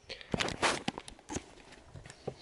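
Handling noise from a hand-held camera being swung round: a quick run of soft knocks and rustles.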